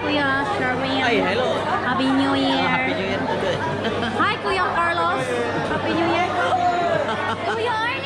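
Chatter of many people talking at once around tables in a crowded hall, with several voices overlapping throughout. A steady low hum runs underneath.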